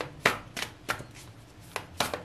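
A tarot deck being shuffled by hand: four sharp slaps of the cards, the first the loudest.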